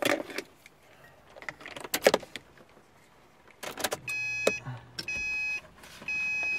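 Keys jangling and clicking as the ignition key of a 2008 Subaru Impreza is turned on. About four seconds in, an electronic chime starts beeping roughly once a second, each beep about half a second long.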